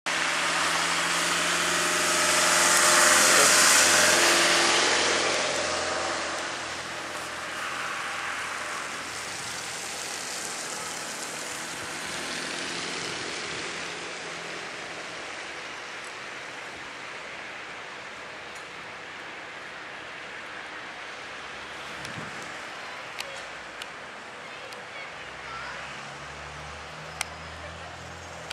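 A vehicle passes on a snowy, slushy street, loudest about three seconds in. Then comes a steady hiss of traffic, with a few light clicks near the end.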